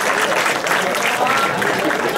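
Audience applauding, a dense run of many hands clapping, with voices mixed in.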